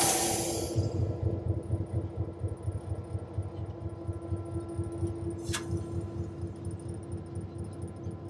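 EMD F7 diesel locomotive running, heard inside its cab: a steady hum and a rhythmic low throb from the engine. At the start a short, loud hiss of compressed air from the air brake system fades away within a second, and a single sharp click comes about five and a half seconds in.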